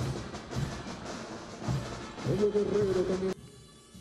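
Parade music with drumming and a held, slightly wavering melody line, cut off abruptly a little before the end.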